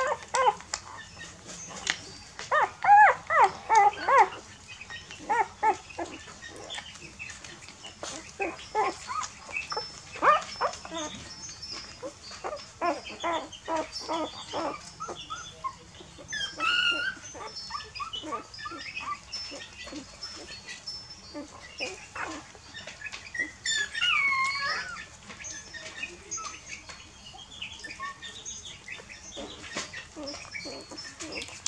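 Young puppies whimpering and squeaking in short, repeated cries while they suckle and jostle at their mother's teats. The loudest is a quick run of squeals a few seconds in. Two longer calls slide in pitch, about halfway through and again around two-thirds of the way in.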